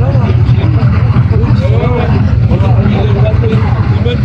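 People's voices over a loud, steady low rumble.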